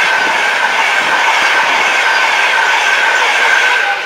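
InterCity 225 express (Class 91 electric locomotive, Mark 4 coaches and driving van trailer) passing at speed on the fast line: a steady loud rush of wheels on rail with clickety-clack, and a steady high ringing tone running through it.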